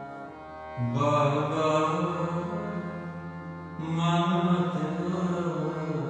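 Sikh kirtan: a harmonium's held reed chords under chanted singing. A louder phrase comes in about a second in and another just before four seconds.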